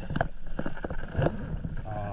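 Stand-up paddleboard paddle strokes in calm sea water: the blade dipping and splashing, with irregular clicks and knocks.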